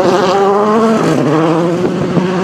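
A rally car's engine running hard as it passes and pulls away. Its pitch dips about a second in, then climbs steadily again.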